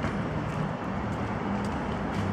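Steady outdoor background noise with a low hum, like distant street traffic.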